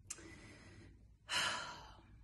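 A woman's breathing between sentences: a faint breath near the start, then one audible sigh a little over a second in that fades out, the sigh of someone nervous.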